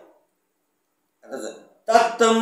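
A man's voice: his speech trails off, then after a second of silence comes a short throaty vocal sound, and near the end he begins chanting on a steady, held pitch.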